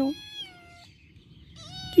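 Domestic cat meowing: one meow trails off just after the start, then after a short quiet gap another meow rises in near the end.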